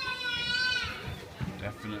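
A child's high-pitched voice calling out in one drawn-out note of about a second, followed by a man speaking near the end.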